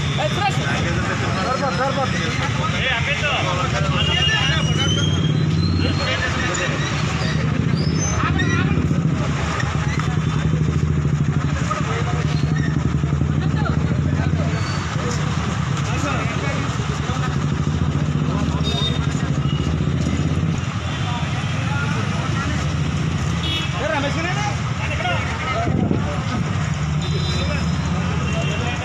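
A man speaking loudly into news microphones over a steady low rumble of motor vehicle engines from street traffic.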